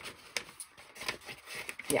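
Light handling of a paper envelope: soft scattered rustles with a few sharp ticks, one about a third of a second in and one just before the end.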